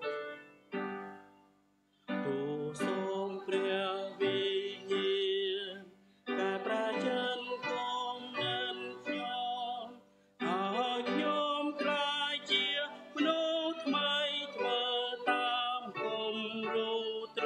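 The last notes of an instrumental introduction ring and fade, then about two seconds in voices start singing a Khmer hymn to instrumental accompaniment. The singing pauses briefly between phrases.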